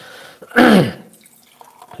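A man's breath followed by one short breathy vocal sound with a falling pitch, a wordless throat noise or sigh between sentences.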